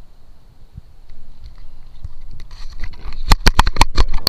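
Handling noise on a body camera's microphone: after a couple of quiet seconds, a quick run of loud knocks and rubbing as the camera is moved against clothing.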